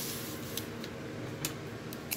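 Foil-wrapped trading card packs being handled and moved on a table: faint rustling with a few light clicks.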